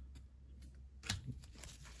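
Faint handling of Pokémon trading cards, the cards sliding and tapping against each other in the hands, with one sharper click about halfway through.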